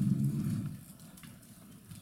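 A man's low, hummed hesitation sound, a drawn-out "mmm", for about half a second, followed by quiet room tone.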